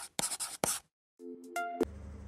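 Pen-scratching sound effect of a handwritten logo being drawn, two quick scratchy strokes, followed about a second in by a short musical chime whose brighter top note ends in a click.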